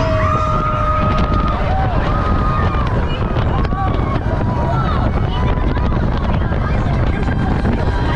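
Incredicoaster steel roller coaster train running at speed: a steady rush of wind on the microphone and rumble of the train on the track, with riders screaming in long, held, wavering cries, the longest in the first second and a half.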